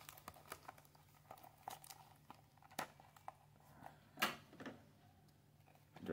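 Faint crinkling and crackling of clear plastic shrink-wrap being picked at and peeled on a small die-cast model box, in scattered short crackles, the loudest one about four seconds in.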